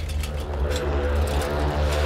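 Background score: a low, steady droning bass under held sustained tones, in a dark, tense mood.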